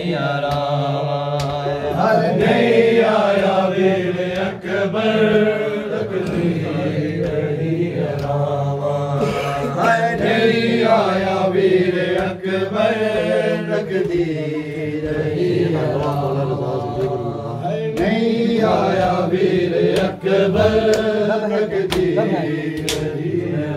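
Men chanting an Urdu noha, a Muharram lament, together in long, wavering sung lines. Sharp slaps of matam, hands beating on bare chests, come through the singing.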